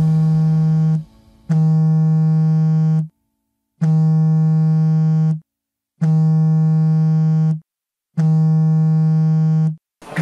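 Mobile phone vibrating with an incoming call: a loud, steady low buzz in long pulses of about a second and a half with short pauses, five times.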